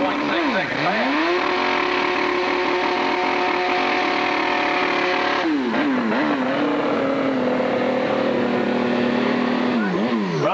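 Drag racing motorcycle engine revved hard through a burnout, the rear tyre spinning in smoke. The revs climb about a second in and hold high and steady, drop sharply around the middle, then hold steady at a lower pitch before blipping up and down near the end.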